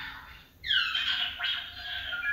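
Star Wars sound effect played back through the speaker of a Hallmark Keepsake Death Star tree topper ornament. After a brief pause, a loud squealing tone sweeps down in pitch about half a second in, followed by a fainter second downward sweep.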